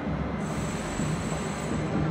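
Steady rumbling background noise of a large, echoing domed church interior, with no distinct events.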